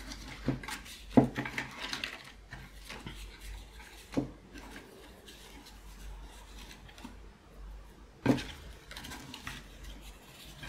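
Small paper ephemera pieces (tags, tickets and cards) being rustled and shuffled through by hand in a small bin, with a few sharp knocks and clatters, the loudest about a second in and again about eight seconds in.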